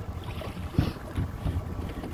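Wind buffeting the microphone, a steady low rumble, with a single sharp knock a little under a second in.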